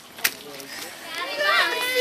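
Voices of children and adults chattering, growing louder about a second in, with a single sharp click near the start.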